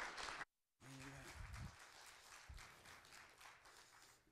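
Congregation applauding. The clapping is strong at first, cuts out abruptly for a moment, then comes back much fainter and dies away.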